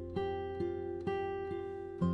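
Background music: plucked acoustic guitar notes, about two a second, each ringing on into the next.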